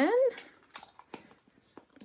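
A drawn-out spoken word trailing off and rising in pitch at the start, then faint light taps and clicks of a clear acrylic stamp block and ink pad being handled on a craft table.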